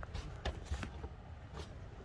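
Faint rustling and a few light knocks from a handheld camera rubbing against clothing as it is carried.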